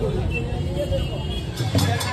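Street-procession crowd babble over a low rumble, with music under it. Near the end, a band's loud drum beats start up.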